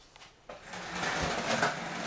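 Skateboard wheels rolling on a concrete floor, a steady rolling noise that starts about half a second in.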